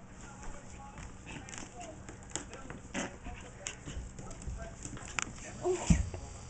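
Small white dog playing rough, with short vocal sounds and scuffling, mixed with knocks and rubbing from the handheld camera; the loudest knock comes just before the end.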